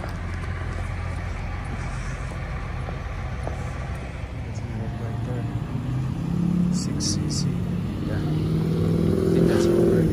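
A Ford Escape SUV pulling up close by, its engine note rising and growing louder through the second half over a steady low rumble, with three short high squeaks about seven seconds in.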